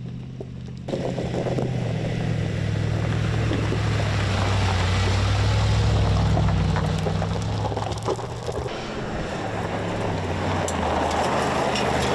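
Mercedes-AMG G 63's twin-turbo V8 running steadily at low revs under load, with gravel and stones crunching under the tyres. It gets louder about a second in and changes character about two-thirds of the way through.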